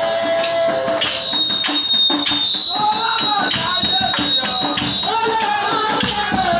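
Live worship music: drum and tambourine beating a steady rhythm, with voices singing over it from about halfway through and a high thin tone held for several seconds.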